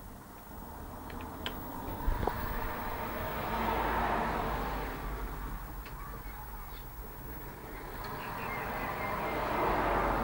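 Vehicles passing: a rushing noise swells and fades twice, over a steady low hum.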